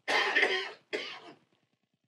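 A man coughing twice to clear his throat: a longer, louder cough, then a shorter, weaker one.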